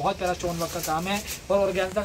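A man's voice speaking rapidly in Hindi, a seller's running patter.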